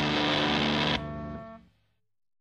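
Garage punk band with distorted electric guitar hitting the song's final chord: the full band stops sharply about a second in, and a held chord rings on briefly and fades out.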